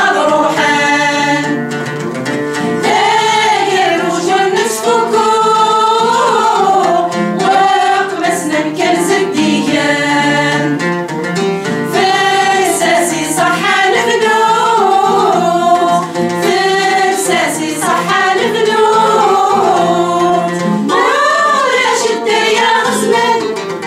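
A group of women singing a Kabyle song together, one melody carried by all the voices, with long held notes that glide between pitches.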